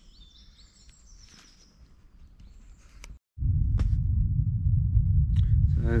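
Small birds chirping faintly in quiet woodland. After a sudden break about three seconds in, a loud, steady low rumble on the microphone takes over, with a few sharp clicks.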